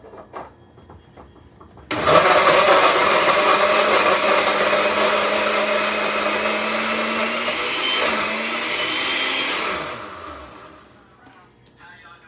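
Countertop blender blending a fruit smoothie: the motor starts suddenly about two seconds in, runs loudly for about eight seconds with its pitch rising slightly, then winds down near the end. A couple of light clicks come just before it starts.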